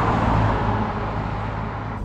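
A car driving past and away, its tyre and engine noise fading steadily.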